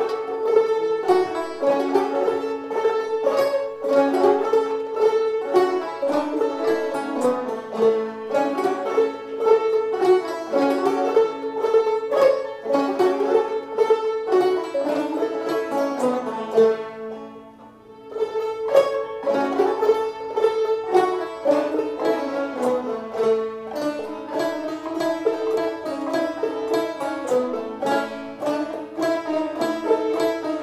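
Many five-string banjos fingerpicked together in Roundpeak style, a group playing a tune in unison with a steady driving beat. The playing stops briefly a little past halfway, then the group starts the tune again.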